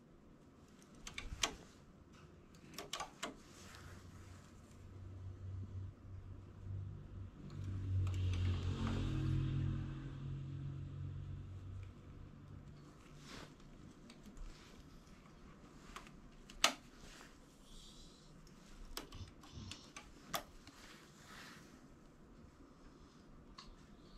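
Faint, scattered clicks and taps of metal knitting-machine needles and a plastic-handled transfer tool as yarn loops are hung onto the needles by hand, with one sharper click a little after halfway. A low rumbling hum swells and fades in the middle and is the loudest part.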